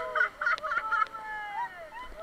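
Rafters whooping and hollering in wordless, sliding cries, breaking into a quick run of short yelps in the first second.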